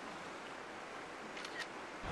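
Faint steady outdoor background hiss, then two faint clicks near the end as the iPhone 14 Pro's camera fires its shutter on self-timer.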